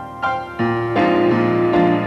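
Solo grand piano playing a praise hymn medley: a run of struck chords, with deep bass notes coming in about half a second in and the playing growing fuller and louder after that.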